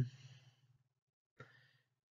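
A pause between spoken sentences: the last word fades out, then near silence broken by a faint, short breath about a second and a half in.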